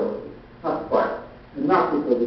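A man's voice talking in short phrases.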